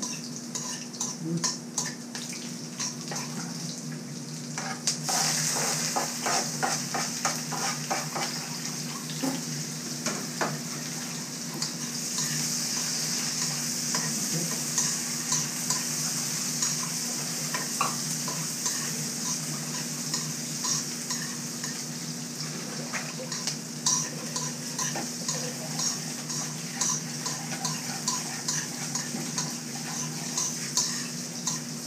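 Chopped garlic sizzling in hot oil in a steel wok, with a metal spatula scraping and clicking against the pan as it is stirred. The sizzle gets louder about five seconds in.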